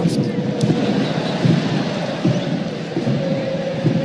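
Football stadium crowd: a steady din of many voices from the stands, with a faint sustained chant underneath.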